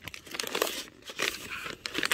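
Plastic snack wrappers and fruit-jelly pouches crinkling as they are shifted and picked up from a pile, in uneven rustles.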